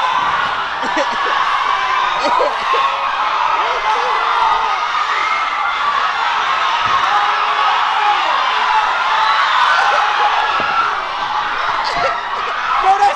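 A crowd of young spectators chattering and calling out, many voices overlapping into a steady, loud babble with occasional whoops.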